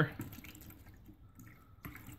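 A thin stream of acrylic latex fortifier pouring from a jug into a plastic bucket, a faint trickle that stops near the end.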